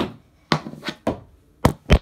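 Mini knee hockey stick knocking against a hardwood floor and a foam ball in a string of sharp taps, then two louder, heavier thuds near the end as the camera is knocked over.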